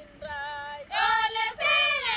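Maasai women singing a farewell song; a softer sung phrase, then about a second in the voices come in much louder and high.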